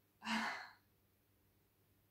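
A woman's short breathy exhale, like a sigh, with a brief voiced start, about a quarter of a second in and lasting about half a second.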